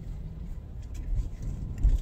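Low, steady rumble of a car's engine and road noise heard inside the cabin while driving, with a single low thump near the end.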